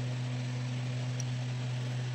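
A steady low hum with a faint, even hiss, unchanging throughout.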